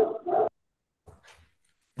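A man's voice speaking into a microphone, ending a sentence about half a second in, then a pause of near silence with one faint, short noise.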